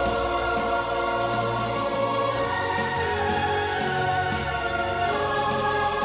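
Background choral music: voices holding long sustained chords over low bass notes, moving to a new chord about every two and a half seconds.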